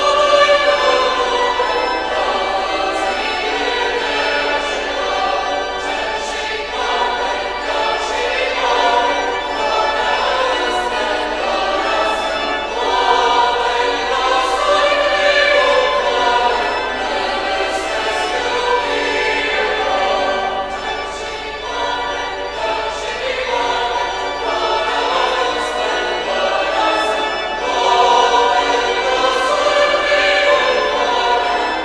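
A choir singing sacred music, several voices holding long notes together.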